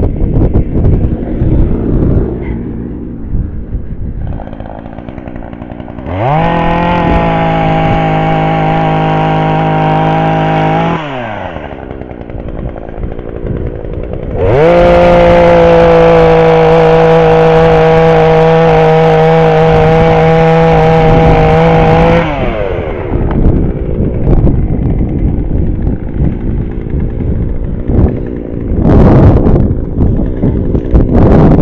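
Petrol chainsaw cutting a fallen branch: twice it revs up quickly to a held full-throttle note, for about five seconds from around six seconds in and then, louder, for about eight seconds from around fourteen seconds in, dropping back to a low idle between cuts. Wind buffets the microphone throughout.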